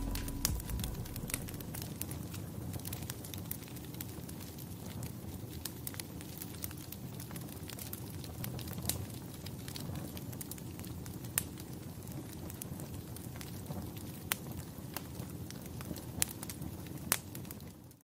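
Charcoal fire burning in a homemade metal furnace: a steady low rush of flame with sharp crackles and pops scattered throughout.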